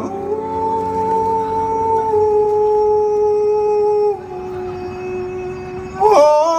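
Long held sung notes in a busking performance: one steady note for about four seconds, then a glide down to a lower note that is held to the end.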